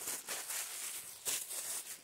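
Packing paper crinkling and rustling as it is handled, in irregular swells.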